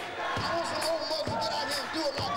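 Congregation stomping their feet on a wooden floor in a steady beat, a little more than one heavy stomp a second, with voices singing and calling over it in an unaccompanied church song.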